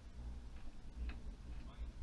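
Gradiente STR 800 stereo receiver with its tuner being swept between stations: a faint steady low hum from the amplifier, with a few faint short blips as the dial turns. The faulty tuner picks up almost nothing.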